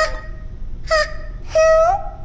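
A cartoon mouse character's wordless vocal sounds: three short whimpering cries, the last one longer and rising in pitch at its end.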